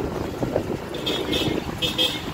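Road noise from riding a motor scooter along a town street: the small engine running with wind on the microphone and other traffic around, and a few short high-pitched sounds about a second in and near the end.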